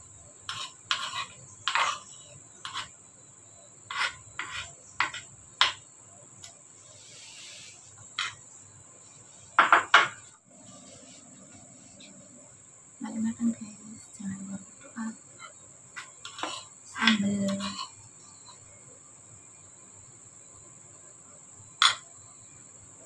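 A metal spoon clinking and scraping against a bowl and a porcelain plate as sambal is served: a run of sharp clinks, one loud clatter about ten seconds in, then a few more near the end. A steady high-pitched whine runs underneath.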